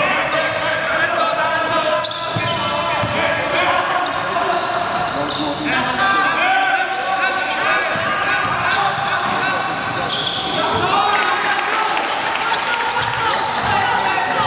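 Live basketball game sounds in a large gym: a basketball dribbled on a hardwood court, sneakers squeaking and players calling out, with no clear words.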